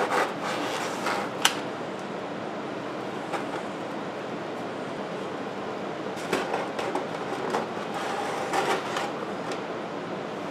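Light handling knocks of a hand tool against foam board, with one sharp click about a second and a half in and small clusters of knocks later, over a steady background hiss.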